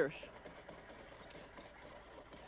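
A small saucepan being slid and shaken on an electric coil burner: a faint, steady rubbing scrape of the pan's base against the coil.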